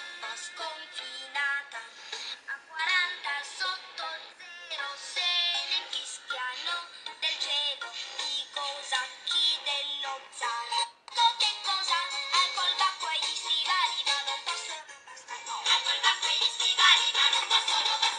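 A children's song with singing, played through the Nexus 5's single small loudspeaker. It has no bass and a rather low volume, and its very poor quality is described as robotic.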